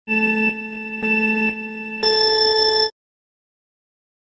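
Electronic beep sequence: two short lower beeps a second apart, then a longer beep an octave higher that cuts off suddenly about three seconds in.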